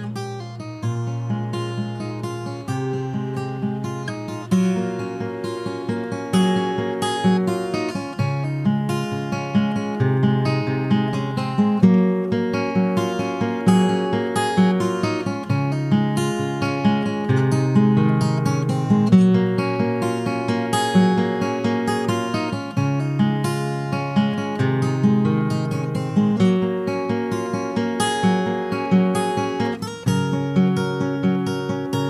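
Background music: a strummed acoustic guitar playing steadily, with regular plucked strokes and changing chords.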